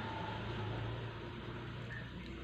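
Steady background hiss with a low hum and no other events: room tone.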